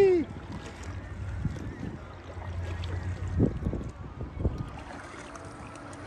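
Kayak paddling on open water: low wind rumble on the microphone and water sloshing against the hull. Two brief sharper sounds come about three and a half and four and a half seconds in.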